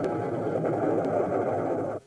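Steady drone of a biplane's engine, with a dense rough texture over it, cutting off suddenly at the end.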